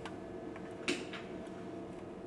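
Light tool contact while reflowing solder joints on a computer power supply's circuit board with a soldering iron and solder wire: one sharp tick about a second in, then a fainter one, over a faint steady hum.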